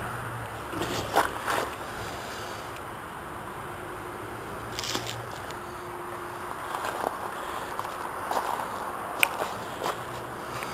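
Footsteps and crackling, scraping handling noise on dry leaves and burlap over a steady hiss, with scattered sharp clicks, the sharpest just after nine seconds.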